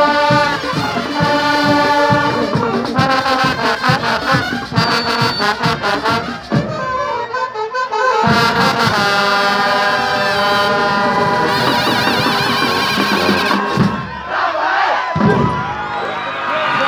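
Marching band of trombones, trumpets and saxophones playing loud held brass chords over a steady beat, with a choppier passage about seven seconds in. Near the end the music breaks off into shouting and cheering.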